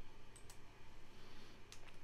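A few faint computer mouse clicks: two close together about half a second in and lighter ones near the end, over a steady low room hum.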